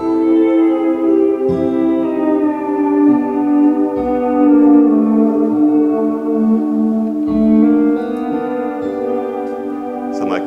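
ROLI Seaboard playing a lap-steel-like guitar sound: a couple of notes are held while others are bent, their pitch sliding downward smoothly.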